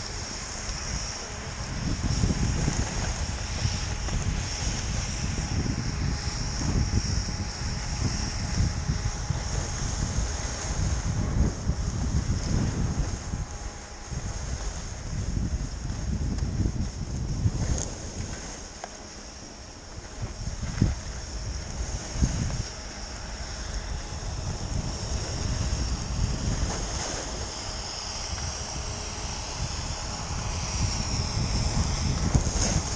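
Wind buffeting the microphone of a camera moving fast downhill, with the hiss and scrape of sliding over packed snow. The rumble swells and eases unevenly, and a few sharp knocks come about two-thirds of the way through.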